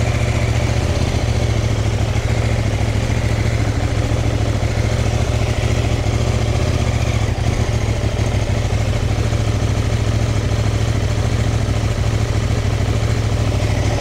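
CFMOTO 800NK motorcycle's 799 cc parallel-twin engine running steadily, with no revving.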